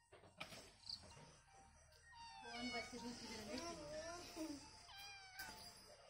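A domestic cat meowing: quiet, drawn-out calls that bend in pitch, from about two seconds in to near the end.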